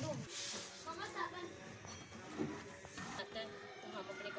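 Indistinct voices speaking, with a brief hiss near the start.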